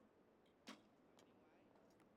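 Faint sounds of a recurve bow shot: one sharp click about two-thirds of a second in, then two fainter ticks.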